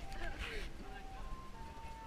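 A simple electronic jingle: one pure tone at a time stepping through a short tune, over crowd murmur, with a brief voice and a rustle about half a second in.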